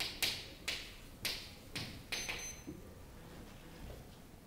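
Chalk writing on a chalkboard: a quick run of sharp taps and scratchy strokes about half a second apart, with a brief high squeak of the chalk near the middle, then the writing stops.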